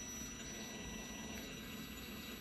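A multimeter's continuity beeper sounds a steady high-pitched tone, which shows that the brake light switch is closed and making contact.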